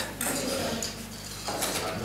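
Meeting-room background: a steady low electrical hum with faint clicks and rustling, a little louder near the start and again about one and a half seconds in.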